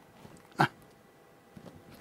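A single short, sharp throat sound from the man, about half a second in, amid otherwise quiet room tone.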